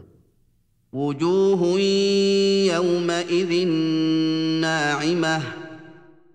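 Quran recitation in Arabic by a single voice, chanted melodically with long held notes. It begins about a second in, after near silence, and fades out near the end.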